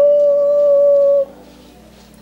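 A single sung or hummed note held steady for about a second and a quarter, then stopping, over a soft, steady background music bed.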